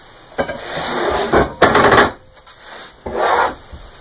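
Heavy steel parts, a slewing bearing and a ring gear, scraping and sliding across a wooden workbench top as they are shifted and the bearing is lifted. There are three bursts of scraping, the loudest in the middle.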